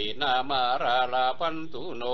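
A voice chanting Pali verses in a steady, drawn-out recitation, the notes held and gently bending in pitch.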